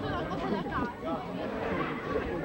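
Several people talking at once: indistinct chatter with voices overlapping.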